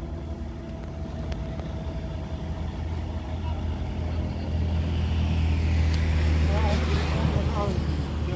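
A motorcycle passing close by on a highway, growing louder to its peak about six to seven seconds in, over a steady low rumble.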